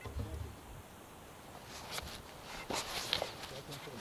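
Paragliding harness and gear handled close to the camera: a low rumble at the start, then from about two seconds in a quick run of rustles and small clicks.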